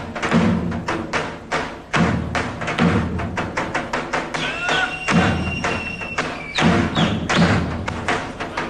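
Daouli, the large Greek double-headed folk drum, played solo in a dance rhythm. Deep booming strokes of the heavy beater land about 2, 5 and 6.5 seconds in, with quick, sharp taps of the thin stick on the other head between them.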